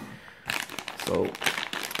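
Clear plastic packaging bag crinkling as hands handle it and start working it open. It is a quick run of crackles beginning about half a second in.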